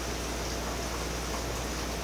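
Steady background hiss with a low, constant hum underneath.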